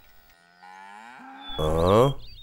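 A cow mooing: a faint, low call that swells into a louder moo near the end.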